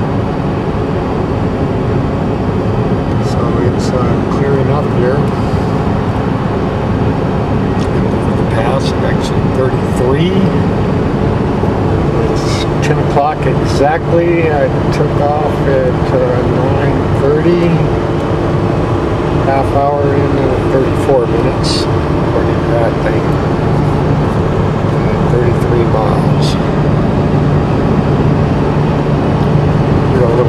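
Steady engine and road noise heard inside a vehicle cabin at highway speed, with a wavering, voice-like higher sound coming and going over it.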